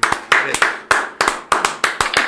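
Hand clapping, a steady run of about four to five claps a second.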